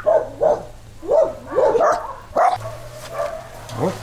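A dog barking in about five short barks over the first two and a half seconds, then stopping.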